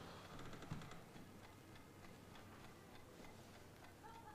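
Wooden mantel clock ticking faintly and steadily, about two ticks a second, in an otherwise near-silent room, with a soft thump about three-quarters of a second in.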